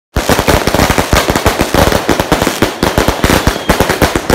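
Fireworks going off in a rapid, unbroken volley of loud sharp bangs, more than ten a second, starting just after the beginning.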